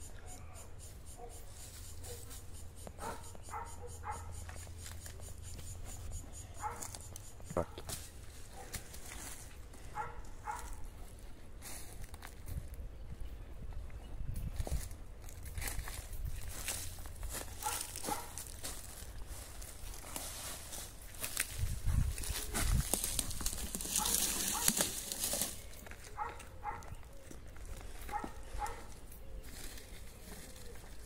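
Hands scooping and pressing loose garden soil around a seedling, with small rustles and clicks and a low rumble of wind on the microphone. A louder stretch of rustling and wind comes about 22 seconds in, and short faint whines come and go.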